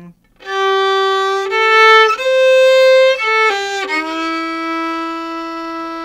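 Solo fiddle playing a short single-line country fill, bowed up bow, quick down bow, up bow, then down bow on the last note. It starts about half a second in with a held note, steps up through a few higher notes, drops quickly, and lands on a long, lower final note for the last two seconds.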